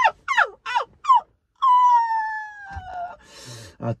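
A dog whimpering: four short, high cries falling steeply in pitch in quick succession, then one long whine sliding slowly down, followed by a short hiss.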